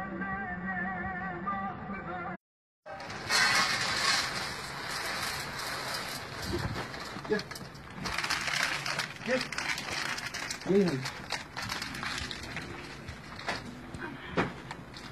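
Music with a male singing voice that cuts off abruptly after about two seconds. Then steady outdoor noise with scattered clicks and a few short rising-and-falling whines from dogs, the clearest one about eleven seconds in.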